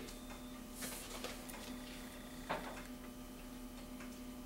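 Room tone with a steady low hum, and a few brief rustles and taps of paper sheets being handled at a table, one about a second in and another about two and a half seconds in.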